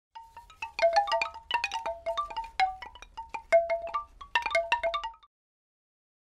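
Logo jingle of bright struck chime notes tumbling in quick, irregular succession, each ringing briefly, ending about five seconds in.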